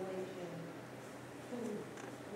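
Faint, low speech with pauses, quieter in the middle and picking up again near the end.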